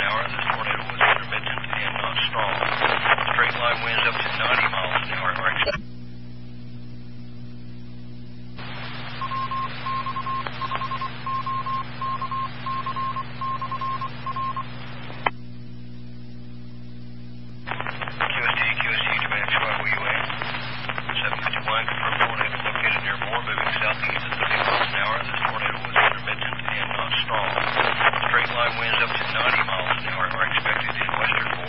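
Amateur radio repeater audio heard through a scanner: static-filled FM transmissions with no clear words for the first six seconds and again from about eighteen seconds on. Between them the signal drops twice to a low hum. In the middle stretch a hissing carrier holds a string of about eight short, evenly spaced high beeps, under two a second.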